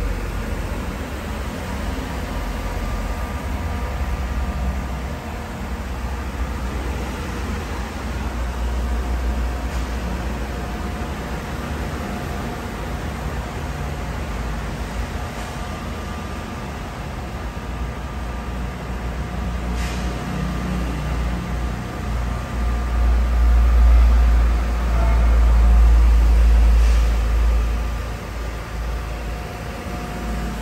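A steady low rumble with a faint hum over it, swelling louder near the end.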